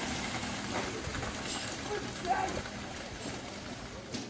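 Faint, distant voices calling out now and then over a steady outdoor noise haze.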